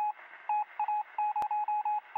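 A single high beeping tone keyed on and off in an irregular run of short and long pulses over a faint hiss. One sharp click comes about one and a half seconds in.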